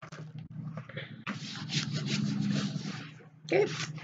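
Rustling and crinkling of diamond painting canvases being handled, loudest for about two seconds from about a second in.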